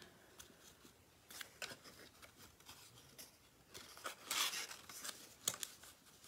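Faint rustling and light taps of cardstock as the flaps of a paper box are pushed in and pressed down onto double-sided tape, with a longer rustle about four seconds in.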